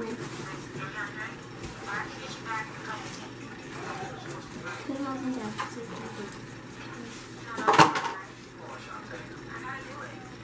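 Soft children's talk with light clinks and scrapes of cookie dough and hands on a metal pizza pan, and one brief loud sound a little before eight seconds in.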